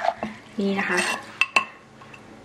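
Wooden pestle working salad in a wooden mortar, as for Thai som tam: soft stirring and mashing with three sharp knocks, the last two close together about a second and a half in.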